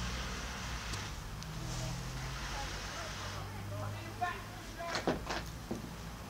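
Low steady hum and hiss with faint, indistinct voices in the background, and a few sharp clicks in the last two seconds.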